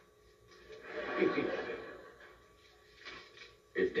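Studio audience laughing: a swell of crowd laughter that rises about half a second in, peaks just after a second and fades away within about two seconds.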